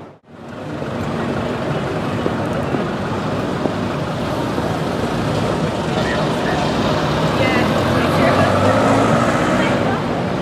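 Street ambience: steady traffic noise mixed with the indistinct talk of people standing around, fading in after a brief dropout to silence at the start.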